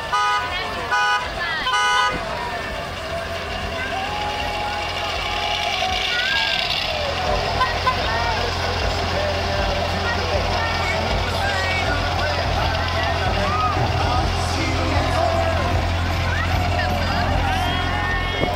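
A vehicle horn toots three short times, about a second apart, right at the start. From about six seconds a steady low engine rumble from the passing parade vehicles runs under the talk of the crowd.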